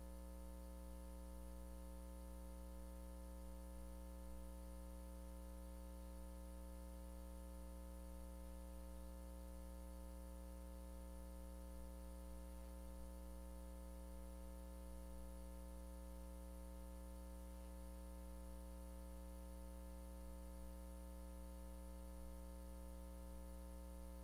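Faint, steady electrical hum with a layer of hiss on the room's microphone feed, otherwise near silence. Nothing starts or stops.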